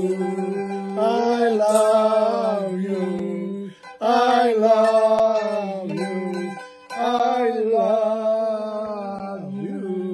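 Music: two men's voices singing long held notes over a plucked-string accompaniment, breaking off briefly about four seconds in and again near seven seconds.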